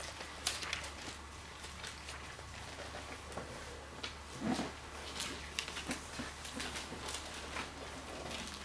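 Thin Bible pages being turned and leafed through, as scattered soft rustles and small clicks, with a louder low sound about four and a half seconds in. A steady low hum runs underneath.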